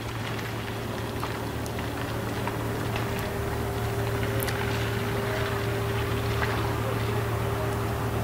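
Steady outdoor background hum: a constant low drone with a faint higher tone held through it, rising slightly in level, with no distinct events.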